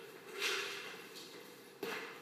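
A short breathy rustle, then a single sharp knock near the end as a small cup is set down on the concrete floor.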